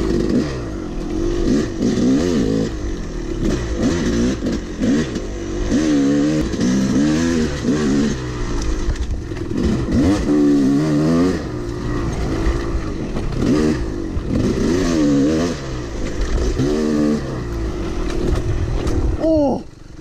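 Yamaha YZ250 two-stroke dirt bike ridden along a trail, its engine revving up and falling back again and again as the throttle is worked, every second or two. Near the end the engine note drops away sharply for a moment.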